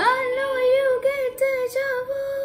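A young woman's voice singing, scooping up into a long held note that wavers slightly, with a couple of brief breaks in it.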